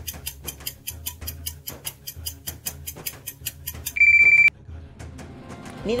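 Quiz countdown timer sound effect: rapid, even clock-like ticking over a low background music bed. About four seconds in, a loud half-second electronic beep signals that time is up.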